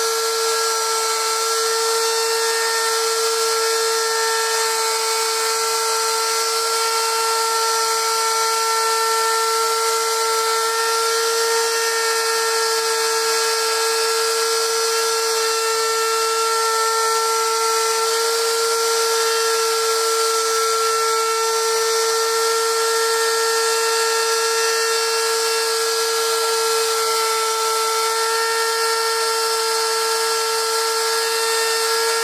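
Electric router on a homemade pantograph running steadily with a high-pitched whine while its 60-degree bit carves letters into a wooden sign.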